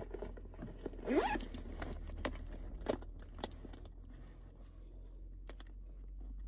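Small items being handled inside a car cabin: a few sharp clicks and light rattles, with a short rising zip about a second in, over a steady low rumble.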